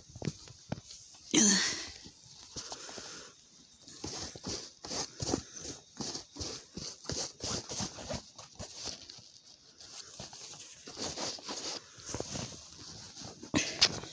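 Boots being dusted off with a cloth: a quick, irregular run of rubbing and brushing strokes, with a louder thump about a second and a half in.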